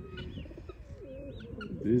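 Pigeons cooing: a low, wavering coo in the first second, with two short high chirps from other birds.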